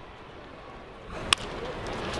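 A wooden baseball bat meeting a pitched ball: one sharp crack about a second and a half in, the batter hitting a ground ball. Low crowd noise runs underneath.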